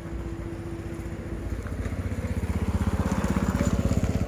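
A small motorcycle engine running with a fast, even putter, growing steadily louder as it draws near.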